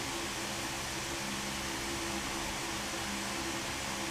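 Steady room tone: an even hiss with a faint, constant low hum underneath.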